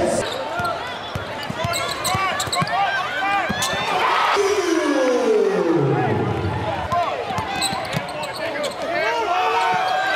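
Basketball game court sound: a ball bouncing on a hardwood floor, sneakers squeaking and a crowd chattering in a gym, with one long falling tone about halfway through.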